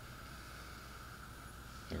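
Steady low hum and hiss of room tone with no distinct sound event, until a man's voice starts right at the end.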